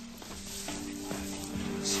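Background music score of low notes held steadily, with more notes joining about two-thirds of a second in to thicken the chord, over the sizzle of food frying in a wok.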